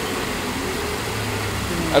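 A steady low rumble of background noise, with faint voices talking near the end.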